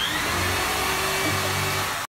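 A steady whirring hiss, like a small electric motor or blower, that starts suddenly and runs at an even level, with a faint whine that dips slightly in pitch just after it starts.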